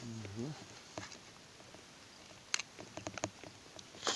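A brief low vocal sound at the start, then a single sharp click about a second in and a quick, irregular run of sharp clicks and taps about two and a half seconds in.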